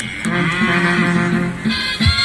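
Live Andean folk music accompanying a cattle-marking (tinkamiento) dance: a long low held tone with a higher melody above it, and a brighter high melody coming in near the end.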